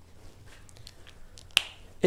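A single sharp click about one and a half seconds in, over a faint low room hum.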